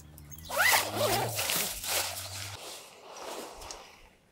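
A zipper on a camping gear bag being pulled open in a few quick strokes, followed by softer fabric rustling as the bag is handled. A low steady hum underneath stops about two and a half seconds in.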